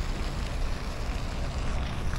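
Steady outdoor city background noise: a low, ragged rumble, like wind on the microphone, under an even hiss, with no distinct events.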